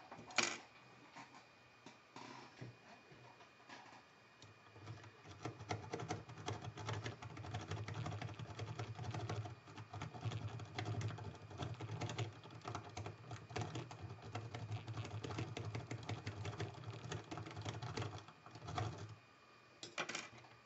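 A lock rake scrubbed rapidly in and out over the pins of a six-pin Mila euro cylinder, under tension, with a key left in the other side. There is one sharp click just after the start, a few scattered clicks, then a fast, dense metallic rattle of pins from about five seconds in until shortly before the end.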